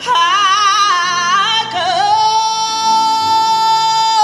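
A woman singing solo through a microphone and PA: a high note sung with vibrato, then, about two seconds in, one long held high note.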